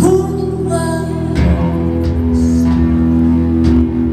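Live indie rock band playing: electric guitar over held low notes, with a woman's voice singing a line about a second in and again near the end.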